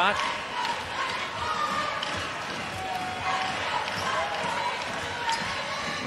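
A basketball being dribbled on a hardwood court over a steady arena crowd murmur.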